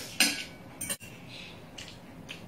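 Metal knife and fork scraping and clinking against a ceramic plate: one loud scrape just after the start, then a lighter clink a little before the middle.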